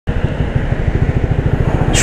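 Motorcycle engine running while riding slowly in traffic, heard from on the bike: a steady low throb of rapid, even pulses.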